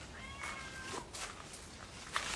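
A domestic cat meowing once: a thin, high meow lasting under a second, starting about a quarter second in.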